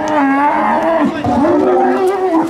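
Young Camargue bull (tau) bellowing in long, drawn-out calls, with a short break about a second in.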